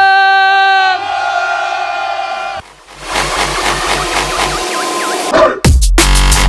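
A long held note fades away, and after a short lull a cyclist crowd cheers and whistles. About five and a half seconds in, a drum and bass track comes back in loudly with a heavy beat.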